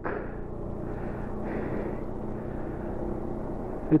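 Bajaj Dominar 400 motorcycle's single-cylinder engine running at a steady cruise, mixed with the steady rush of riding wind.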